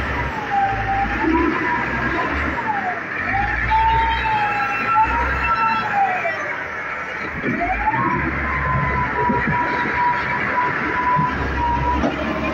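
A siren rising and falling slowly in pitch, then holding a steady tone from about eight seconds in, over the low rumble of street traffic.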